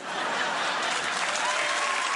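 Studio audience applauding and laughing right after a punchline, a steady wash of clapping.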